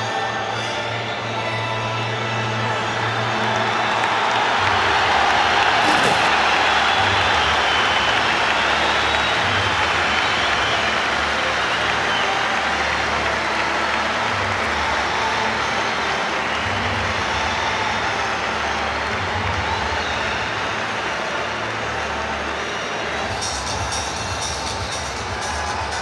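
A large football-stadium crowd cheering over music with a changing bass line. The crowd noise swells about four seconds in and stays high for several seconds.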